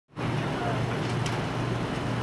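Steady city street ambience: traffic noise with a constant low hum.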